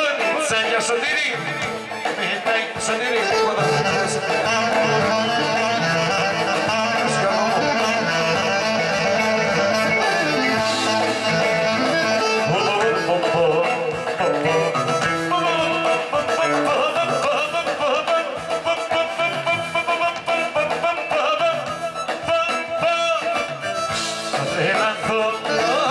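Live Greek folk band music played loud through PA speakers, a clarinet carrying the melody over a steady accompaniment.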